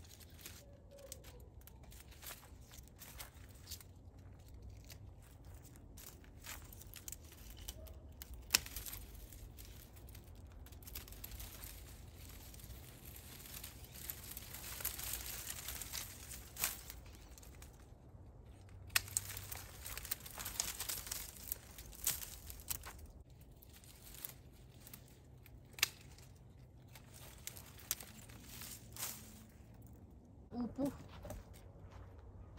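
Withered vines being cut and pulled from a trellis: dry stems and leaves rustling and tearing, with scattered sharp snips of hand pruning shears.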